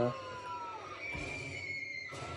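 Faint soundtrack of a scary programme playing on a television in the background: eerie held tones, one sliding slowly downward.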